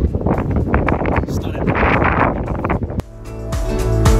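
Strong wind buffeting the microphone, a loud rushing that cuts off abruptly about three seconds in. Background music with a steady low bass then begins and swells.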